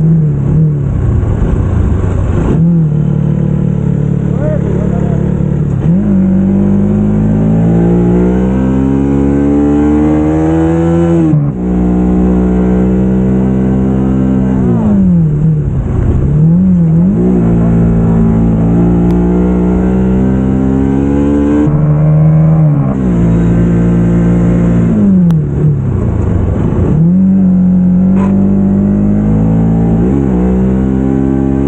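Motorcycle engine pulling hard on a winding road: its note climbs steadily as it revs, then drops sharply at each gear change or throttle lift, about four times, before climbing again.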